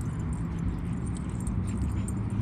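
A steady low outdoor rumble with faint, sparse metallic jingling, the tags and rings of dog collars as the dogs run and play.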